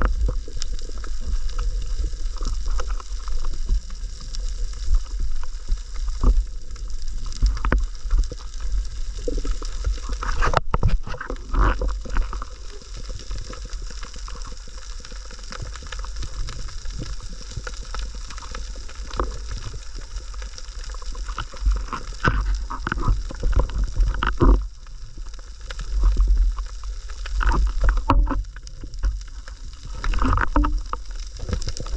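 Muffled underwater water noise picked up by a submerged camera: a steady low rumble with irregular gurgles and short knocks.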